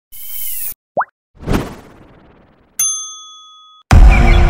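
Animated logo sting made of sound effects: a short whoosh, a quick rising pop about a second in, a swish that dies away, then a bright bell-like ding that rings out for about a second. Music cuts in loudly at the very end.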